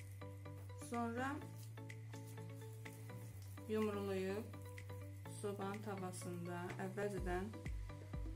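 Quiet kitchen room tone with a steady low hum, faint voices in the background, and a few soft clicks of hands working cocoa cookie dough in a glass bowl.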